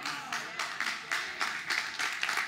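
A congregation applauding: many overlapping hand claps.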